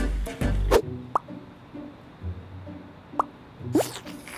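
Background music that stops under a second in, followed by three short rising plops like water drops, the last two close together, over a faint hiss.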